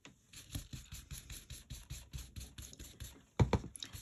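Stencil brush with soft domed bristles being rubbed quickly over a stencil and cardstock to blend in ink: a rhythmic scratchy brushing at about five or six strokes a second. A louder thump comes near the end.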